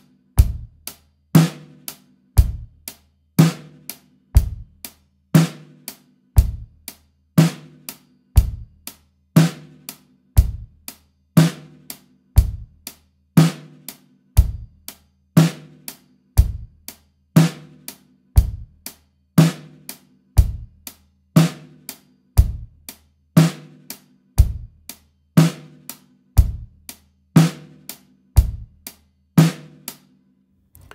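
Dixon drum kit with Meinl hi-hats playing a basic rock beat at a slow, even tempo of about one beat a second: eighth notes on the closed hi-hat, snare drum on two and four, bass drum on one and three.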